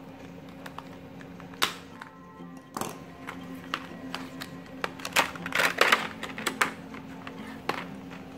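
Plastic blister packaging being handled and pulled open: sharp clicks about one and a half and three seconds in, then a run of crackles near the middle to end, over steady background music.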